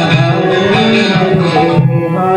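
Kirtan music: a hand drum keeps a beat under sustained, held instrumental tones.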